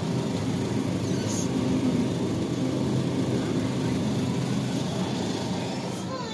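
Steady low hum and background din of a supermarket frozen-food aisle, with no single event standing out.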